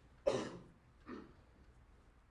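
A person coughing twice: a sharp, loud cough about a quarter second in, then a softer, shorter one about a second in.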